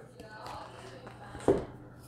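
Faint rustle of trading cards sliding against each other as a pack of baseball cards is flipped through by hand, with one short tap about one and a half seconds in.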